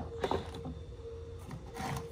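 Spice jars and tins being shifted about on a wooden shelf: a light knock about a quarter second in, then a few fainter taps, over a faint steady hum.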